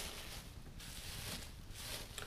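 Faint, irregular rustling of dry leaves as a gloved hand pushes the leaf cover of a worm bin aside.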